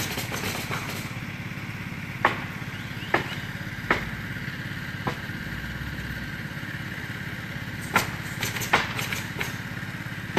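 A small engine runs steadily underneath sharp cracks of roofers nailing down shingles. The cracks come singly about a second apart, then in a quicker cluster near the end.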